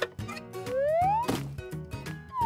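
Light background music with a whistle-like sound effect that glides upward in pitch for about half a second, midway through.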